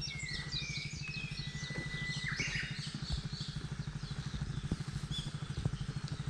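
Several birds singing, with quick chirps and trills and one long steady whistle about two seconds in, over the low, evenly pulsing hum of an idling motorcycle engine.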